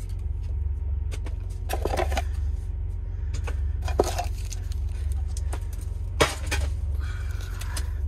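A metal Pokémon card tin being opened and handled: a few knocks and clicks from the tin and its lid, the sharpest about six seconds in, as the booster packs are taken out. A steady low hum runs underneath.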